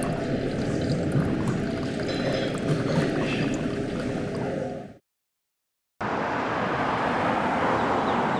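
Thin stream of water pouring from a stainless gooseneck pouring kettle into a ceramic pour-over dripper, trickling steadily. It cuts off suddenly about five seconds in, and after a second of silence a steady outdoor hiss begins.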